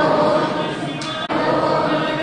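Devotional singing by a group of voices holding long notes, with a brief break just over a second in.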